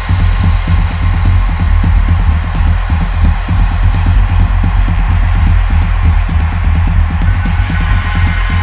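Percussion music: drums and metal percussion struck in fast, dense strokes over a heavy, steady low bass, with ringing tones held through it.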